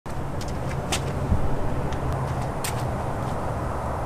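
Steady outdoor background rumble with a few short, sharp clicks, one about a second in and another about two and a half seconds in.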